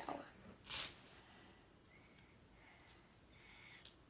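A short, sharp sniff about a second in, then quiet handling of a baseball cap's plastic snap strap, with small clicks near the end.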